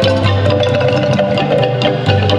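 Kolintang ensemble, the Minahasan set of wooden xylophones from bass to small melody instruments, playing a march. Many quick mallet strokes ring over held low bass notes.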